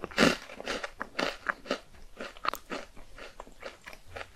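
Close-miked chewing of a crunchy chocolate ball: a quick run of sharp crunches, about three or four a second, loudest just after the start.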